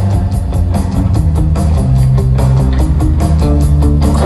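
Live rock band playing an instrumental stretch of a song with no vocals: electric guitars over sustained bass and a steady drumbeat, loud.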